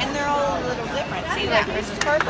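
Indistinct chatter: several voices of children and women talking over one another in a crowded room.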